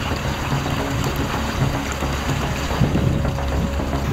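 Steady rush of water pouring into a tubewell tank, with a low steady hum underneath.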